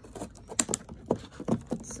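Crackles and sharp clicks of a clear plastic food clamshell being handled: a handful of separate snaps spread through the two seconds.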